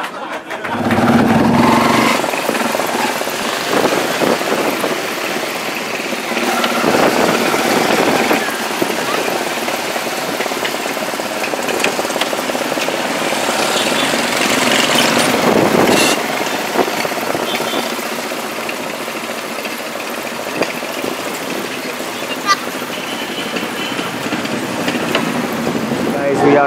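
Street traffic: small motorcycles and motorcycle-sidecar tricycles running and passing close by, with indistinct voices in the background.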